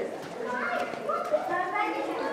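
Children's voices talking faintly, higher-pitched than adult speech, with one short tap partway through.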